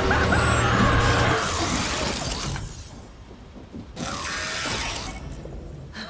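Mechanical sound effects from a robotic device: grinding, ratcheting and clattering, loud for the first two and a half seconds, then a short lull and a quieter stretch near the end.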